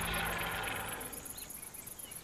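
Insects chirping in a fast, even, high-pitched rhythm, with the tail of background music fading out in the first second.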